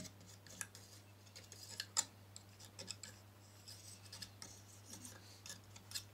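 Faint, irregular scratches and clicks of a metal palette knife laying oil paint onto a painting panel, over a low steady hum.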